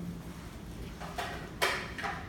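Low room noise, then two short handling sounds from a ukulele being picked up and readied, the second and louder one about a second and a half in.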